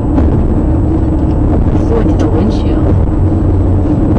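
Steady low rumble of road and engine noise heard inside a car's cabin while it drives at highway speed.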